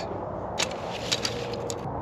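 A tent being unpacked and handled on sand: light rustling of fabric and a few soft clicks, over a steady low background rumble.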